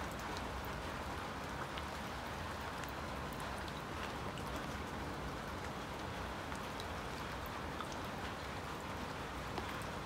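Light rain pattering on the water of a garden pond: a steady, even patter with faint scattered ticks of single drops.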